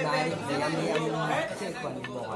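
Men's voices talking and chatting, with no playing heard.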